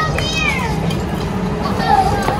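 Girls' high-pitched voices: a short squealing call that falls in pitch near the start, with more chatter and another call near the end.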